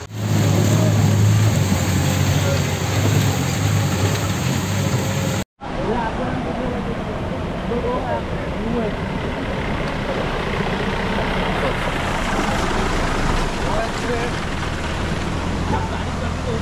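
Rushing water of a flooded stream, with a low engine hum under it for the first few seconds. After a brief dropout about five seconds in, a steady rush of water continues as a jeep wades through the current.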